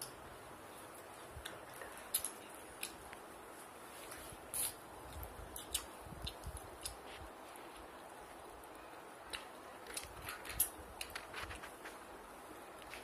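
Scattered small clicks and rustles from toffees being handled and eaten, coming irregularly over a steady faint hiss.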